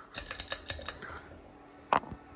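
Quick light clicks of a Hunter ceiling fan's metal ball pull chains being handled, then one sharp, louder click near the end.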